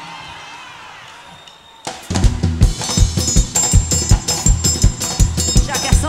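A live forró band starts up about two seconds in. The drum kit leads with a fast, steady dance beat under the full band. Before that, only a faint echo dies away.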